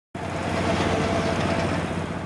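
Street traffic ambience: a steady wash of noise from passing vehicles, with a faint steady hum running under it.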